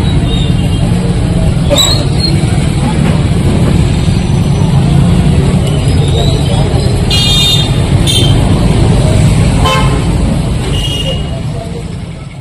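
Steady roadside traffic rumble with several short vehicle horn toots, the longest about seven seconds in and others a little before 8, near 10 and near 11 seconds; the sound fades away near the end.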